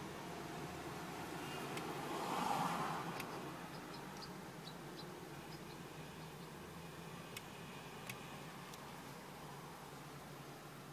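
Quiet, steady low hum of a car interior, with a soft rustle about two seconds in and a few faint clicks later on.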